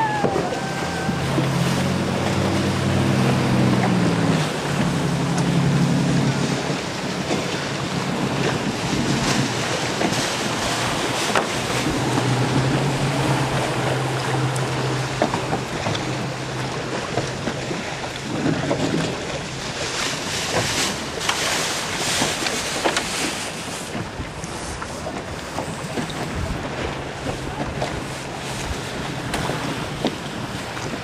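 Wind buffeting the microphone over choppy open water, with sea splash and rushing water throughout. A low motor hum rises in the first several seconds and again about twelve to sixteen seconds in.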